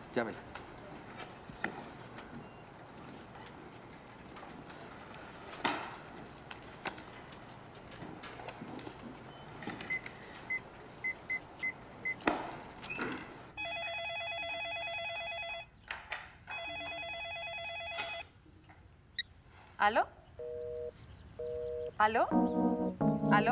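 Telephone keypad beeps as a number is dialled, then a telephone ringing in two long warbling rings of about two seconds each, about a second apart. Near the end come two short, lower electronic tones. Before the dialling there are light handling clicks and rustles.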